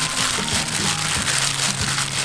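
Background music with the crinkling rustle of a plastic-gloved hand kneading sliced raw pork in marinade in a bowl.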